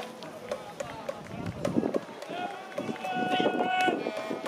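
Voices in the stands of a ballpark, with a sharp click right at the start. Over the last two seconds a held, echoing voice-like tone rings out across the field.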